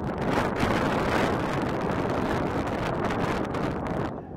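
Wind rushing over the microphone, a loud steady roar for about four seconds that dies away at the end.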